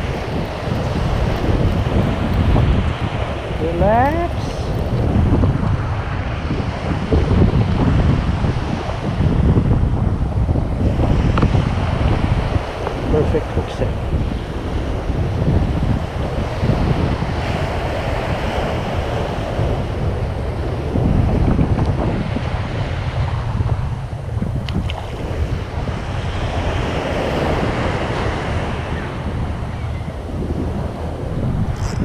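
Surf breaking on a sandy beach, under heavy wind rumble on the microphone that swells and fades with the gusts. A brief rising squeal comes about four seconds in.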